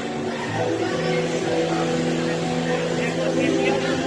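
A steady low droning tone held from about half a second in, under the chatter of people nearby.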